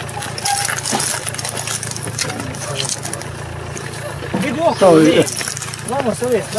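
Voices of people unloading packages from a car boot, with scattered knocks and rattles of boxes and bags being handled over a steady low hum; a voice is loudest a little after four seconds in.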